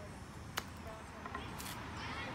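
A single sharp click about half a second in: a mini-golf putter striking the golf ball.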